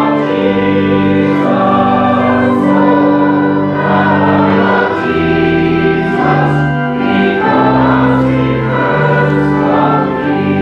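Group of voices singing a hymn together with organ accompaniment, moving in held chords that change every half-second to a second.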